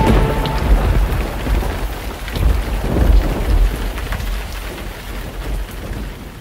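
Steady rain with deep rolling thunder as the song's closing sound; the rumble swells about two and a half seconds in, and the whole fades out toward the end.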